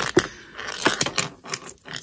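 Handling sounds of needlework: a few light, scattered clicks and soft rubbing as a needle and yarn are drawn through knitted stitches.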